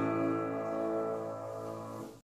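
A grand piano's final chord held and slowly dying away at the close of a song's accompaniment.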